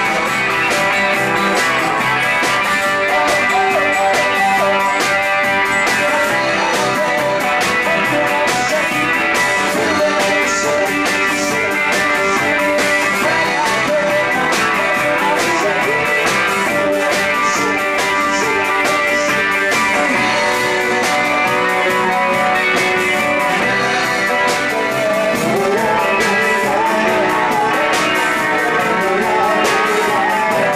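A live rock band playing, with electric guitars over a steady drum beat and a man singing.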